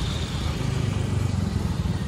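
Motorcycle engine running as it passes close by, a steady low rumble.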